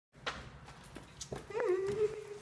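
A short whining cry starts about one and a half seconds in: it wavers in pitch for a moment, then holds one steady note. A few faint knocks come before it.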